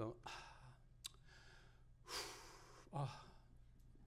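A man's dramatic, theatrical sigh: a long breathy exhale about two seconds in, followed by a short spoken "oh".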